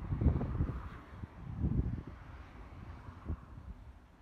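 Wind buffeting the microphone in irregular low rumbling gusts, strongest in the first two seconds, with a short knock about three seconds in.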